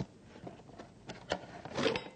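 Glassware being handled on a table: a few light knocks and clinks with some rubbing as a nosing glass and a whisky bottle are picked up.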